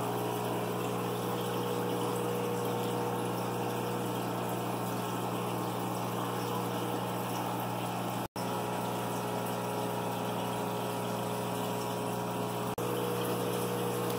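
Aquarium pump running with water bubbling: a steady hum under an even wash of water noise. The sound cuts out for an instant about 8 s in and again briefly near the end.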